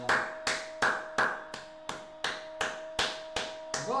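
A man clapping his hands in a steady rhythm, a little under three claps a second.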